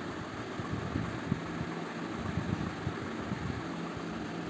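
Steady low background hum and hiss of the recording's room tone, with a few faint, soft low thumps scattered through it.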